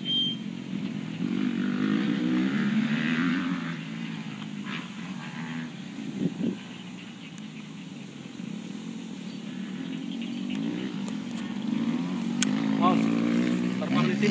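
A small engine running, its pitch slowly rising and falling, loudest in the first few seconds and again near the end.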